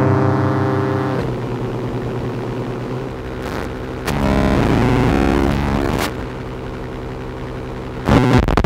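Circuit-bent Yamaha PSS-9 Portasound keyboard held on a note while its supply voltage is starved, so the tone distorts and wavers. About a second in the steady drone breaks up, a louder stretch of shifting tones runs from about four to six seconds, and the keyboard crashes into crackling noise just as the stretch ends.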